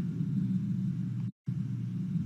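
Steady low hum of room and microphone background noise in a pause between spoken phrases, cut by a brief total dropout to silence just under a second and a half in.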